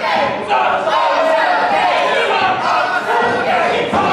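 Wrestling crowd yelling and shouting, many voices overlapping.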